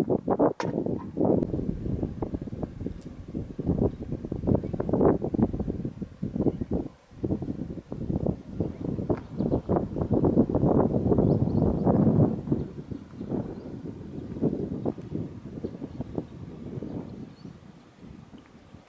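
Wind buffeting the microphone: an uneven, gusting rumble that surges and dips, fading near the end.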